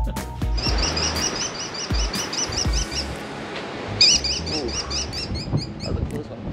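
American kestrel calling a fast, shrill, repeated 'klee-klee-klee', in two runs with a short break between, the second starting about four seconds in. A music bed plays underneath.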